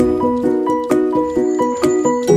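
Background music: a bright melody of quick, evenly spaced notes, about four a second, over a steady beat.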